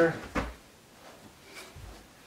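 One sharp wooden knock about half a second in as the weathered wooden porch swing is handled on the workbench, followed by a faint low thump near the end.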